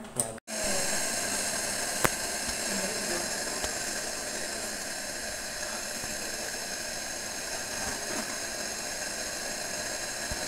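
Peppers frying in oil in a pan on a gas stove: a steady sizzling hiss, with one sharp click about two seconds in.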